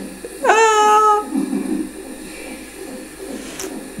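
A single high-pitched vocal cry that slides up and is held for under a second, followed by faint low murmuring.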